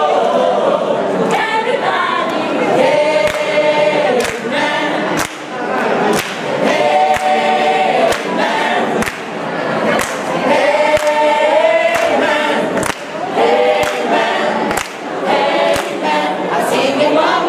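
A mixed choir of women's and men's voices singing together, clapping their hands in time about once a second.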